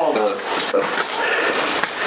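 Voices talking in a small garage; no other distinct sound stands out.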